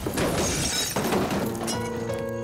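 Film car-crash sound effects: a car rolling over, with two heavy impacts about a second apart and glass shattering between them. Music with held notes comes in near the end.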